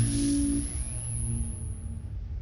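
Closing logo sting: a swelling shimmer that peaks at the start, over a deep low rumble that carries on throughout, with a thin, very high steady tone that cuts off at about two seconds.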